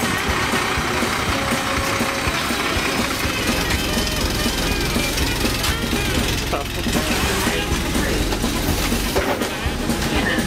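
Double-decker bus engine running with a steady low rumble inside the bus, with people's voices over it as passengers board.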